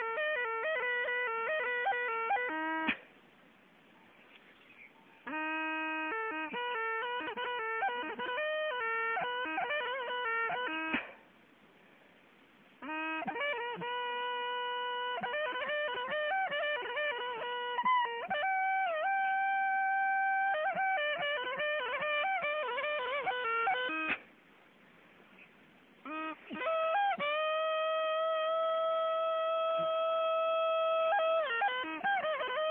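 Traditional Apatani flute played solo: quick, shifting notes in short phrases, broken by three pauses of about two seconds, ending on a long held note.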